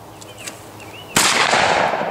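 A single blast from a Browning semi-automatic shotgun, fired at a thrown clay pigeon, comes about a second in. Its report trails off over the next second.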